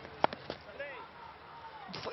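Sharp crack of a cricket bat striking the ball, about a quarter-second in, followed by a couple of lighter knocks and faint calls from the field.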